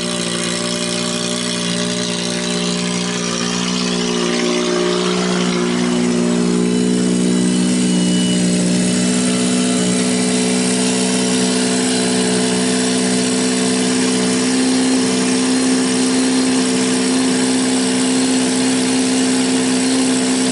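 Toyota Tercel four-cylinder engine idling steadily just after a cold start at −30 °C, having sat for three weeks. It grows slightly louder about six seconds in and then holds even.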